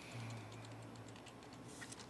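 Faint clicking of typing on a computer keyboard over quiet room tone, with a low hum lasting about a second near the start.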